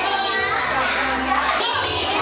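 A group of young children chattering and calling out together over background music with a steady bass line.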